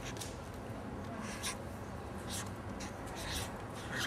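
Felt-tip marker scratching across a paper pad in short, irregular strokes as letters are written.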